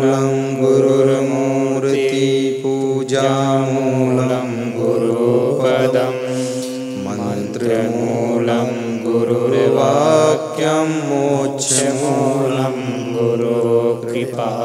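A man's voice chanting a mantra in long held notes, amplified through microphones, with the pitch stepping down about halfway through.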